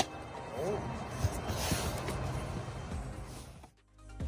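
Quiet outdoor background noise with a brief faint voice under a second in and a soft hiss around the middle, fading out to silence just before the end.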